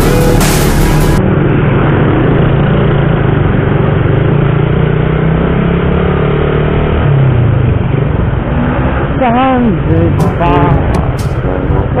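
Suzuki motorcycle engine running at riding speed, with wind and road noise on the onboard microphone; the engine note shifts about seven seconds in. Music plays for the first second, and a brief wavering voice-like sound comes near the end.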